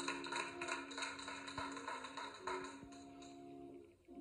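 Rhythmic hand clapping over a held low chord that shifts once partway through; the clapping dies away about three seconds in and the chord fades near the end.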